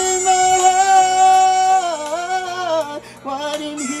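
A man singing a slow ballad: he holds one long high note for nearly two seconds, then slides down into a run of quick melodic turns, with a short break for breath about three seconds in. Steady low accompaniment sits underneath.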